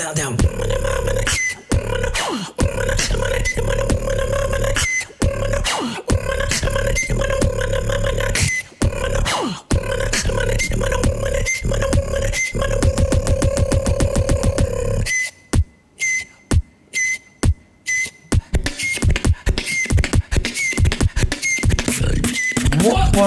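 A beatboxer performing a battle routine: a fast, steady beat of vocal kicks and snares over a held, hummed bass tone. About fifteen seconds in the bass and kicks drop out for some three seconds, leaving only sparse sharp clicks, then the full beat comes back.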